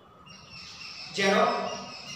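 A man's voice saying a word aloud about a second in, after a short pause.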